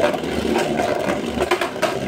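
Beyblade Burst top on a Volcanic driver tip spinning in a plastic stadium, a fast rattling whir with several sharp knocks in the second half as it bangs against the stadium wall. The banging is the sign that the driver is not fully awakened yet.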